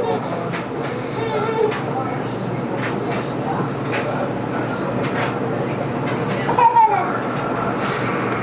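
A baby's voice: a short hum about a second in and a brief falling whine near the end. Underneath are a steady background hum and scattered small clicks.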